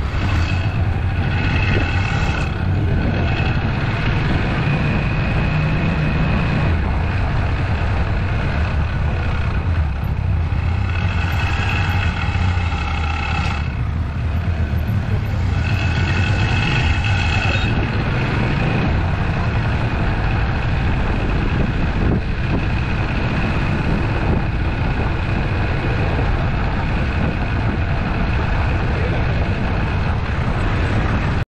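Street traffic noise with a steady low rumble of vehicle engines. Higher tones rise above it a few times.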